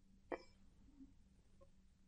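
Near silence: room tone with a faint low hum, broken once by a brief faint sound about a third of a second in.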